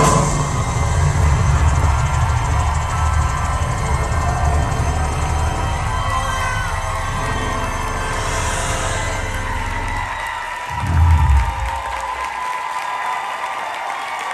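Live hip-hop backing music of beatboxed beats and keyboards with a heavy bass, while an audience cheers. About eleven seconds in it ends on one loud low hit, and the cheering carries on.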